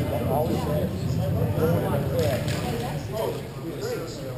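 Indistinct voices of several hockey players calling out across a large indoor rink, none of it clear words, with a few brief clacks around the middle.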